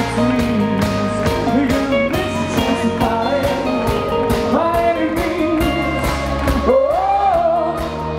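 Rock band playing live, with a voice singing over electric guitar, bass and drums keeping a steady beat.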